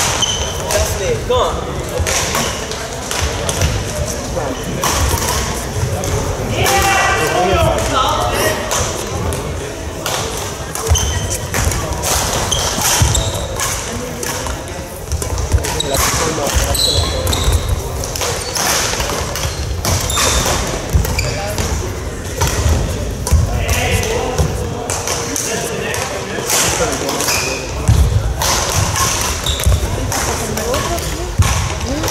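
Badminton play in a large sports hall: repeated sharp racket strikes on the shuttlecock and players' footsteps thudding on the court floor, with voices from around the hall echoing in the background.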